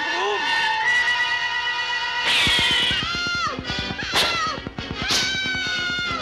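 Cartoon background music with held chords, a short crash-like burst of noise a little over two seconds in, and quick falling glides about four and five seconds in.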